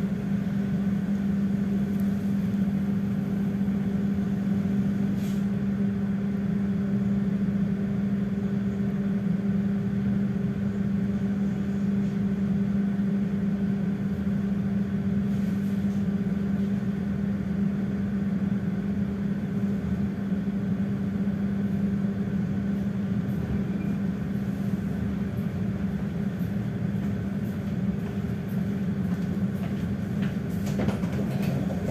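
Interior of a passenger train coach under way: a steady hum with a constant low drone, and a few faint clicks.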